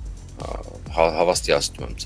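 A man's voice: a short pause, then a brief spoken phrase about a second in, over a faint background music bed.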